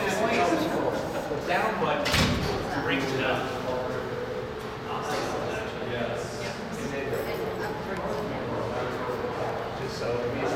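Indistinct talking in a large room, with a single loud thump about two seconds in.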